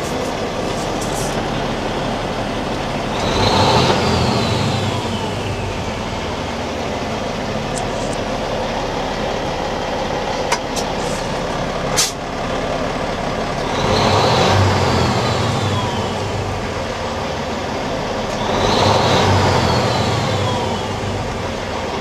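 Diesel engine of a 2010 Peterbilt 384 day-cab truck idling, heard from the cab. It is revved three times, each rise followed by a whine that falls away as the revs drop back. A sharp click comes about twelve seconds in.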